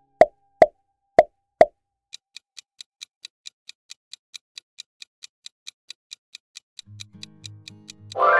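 Four quick pop sound effects, one as each answer option appears, then a clock-ticking countdown effect at about four to five ticks a second. A low musical jingle starts near the end.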